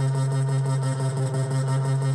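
Electronic synth jam from a Yamaha DJX keyboard with a Korg Monotron Delay: a steady low drone held under a fast, even pattern of high ticks and layered pitched notes.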